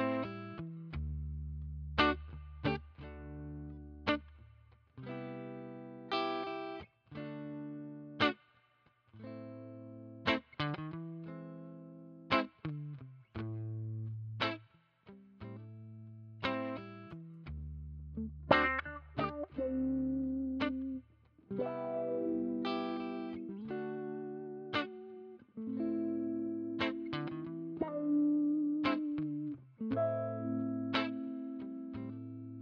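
Strat-style electric guitar played through the Mayfly Audio Le Canard envelope filter and Demon Girl fuzz pedals, set for a subtle, lightly driven tone. Single notes and chords are picked in phrases, each ringing out and fading, with short breaks between phrases.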